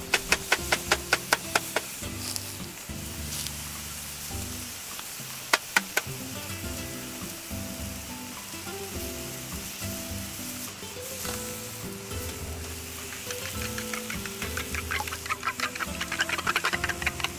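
Pickled napa cabbage sizzling in butter in a seasoned frying pan over a wood fire, with background music underneath. There is rapid clicking in the first two seconds and two sharp knocks about five and a half seconds in; near the end, chopsticks rattle quickly against a metal cup as eggs are beaten.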